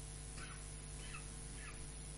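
Three faint, short animal calls about half a second apart, over a steady background hiss and low hum.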